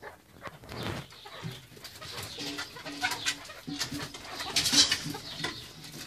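Chukar partridges calling with short repeated notes, part of a male's courtship display toward a female. Many quick scratchy sounds run through the calls, and the loudest burst comes a little before the end.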